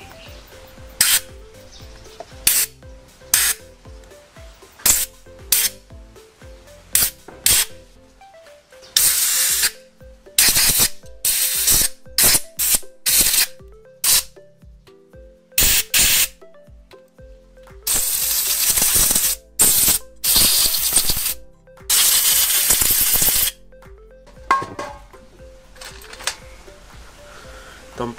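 Compressed-air blow gun hissing in repeated blasts as it blows out the air passages and jets of a Yamaha Mio Sporty scooter carburetor. The blasts start short and sharp, and become longer, one to two seconds each, in the middle.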